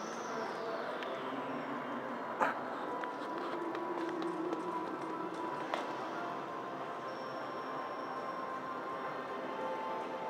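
Casino-floor ambience: background music and a murmur of distant voices. Two sharp clicks stand out, one a couple of seconds in and another near six seconds.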